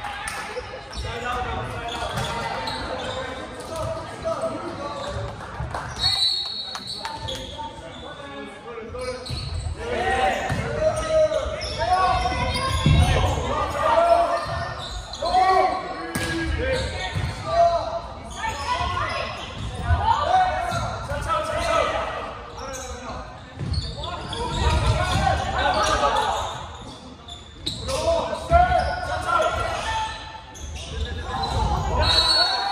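Indoor volleyball rally: the ball is struck and hits the floor in sharp smacks, among the calling and shouting voices of players and onlookers, echoing in a large gymnasium.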